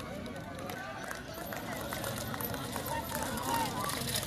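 Indistinct voices of people talking at a distance over steady outdoor background noise.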